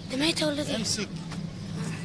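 A steady low hum of a running motor or engine, with a few light handling knocks in the second half.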